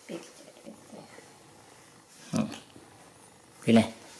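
Baby monkey giving two short, loud calls about a second and a half apart, the second one louder.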